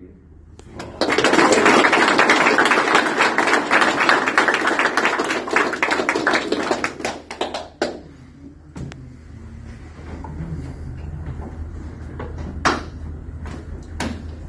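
A roomful of people applauding, starting about a second in and dying away after about six seconds, followed by quieter murmuring and one sharp hit near the end.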